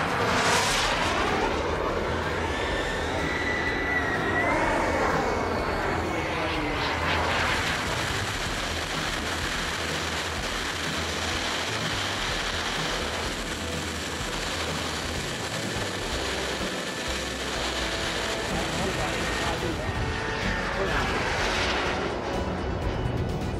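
Small model-jet turbine engine (KingTech 170) on a radio-controlled BAE Hawk, its whine sliding up and down in pitch as the jet passes, twice in the first several seconds and again near the end. In between there is a steadier rush of engine and air noise.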